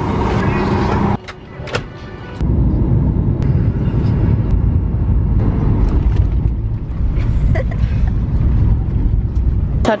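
Cabin noise of a jet airliner on its landing roll: a loud steady low rumble of engines and runway that cuts off abruptly near the end.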